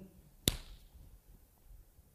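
A single sharp tap about half a second in, dying away quickly, against the faint quiet of the room.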